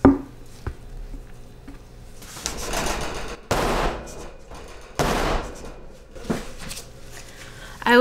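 Wooden soap mold handled on a stainless steel worktop: a sharp knock at the start, then two short scraping noises of about half a second each as the mold is shifted on the metal.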